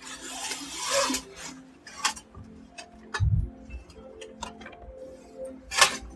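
Rustling and clicking noises: a rustle at the start, scattered sharp clicks, a dull low thump around the middle and a sharp rustle near the end, over faint steady tones.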